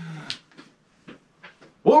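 A man's drawn-out vocal sound falling in pitch and trailing off at the start, then a short pause with a few faint ticks, then his speech starting again near the end.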